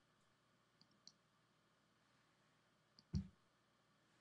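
Near silence, broken by a few faint clicks about a second in and a short dull thump just after three seconds.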